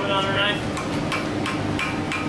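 Hand hammer striking hot steel on a steel anvil, a quick run of ringing blows, a few to the second, starting about half a second in.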